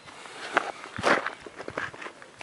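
A few short scuffs and knocks, a sharp one about half a second in, the loudest about a second in, then several lighter clicks.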